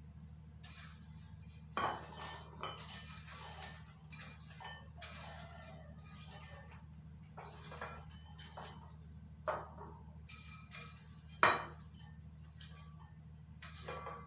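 A ladle scooping popcorn out of a pot into a bowl: a few sharp knocks of the ladle against the pot, the loudest near the end, with the rustle of popcorn being scooped and poured in between, over a steady low hum.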